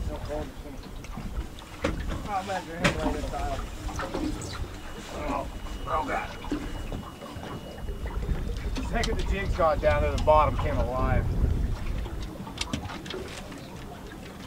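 Indistinct voices talking and calling out, over a low rumble of wind on the microphone.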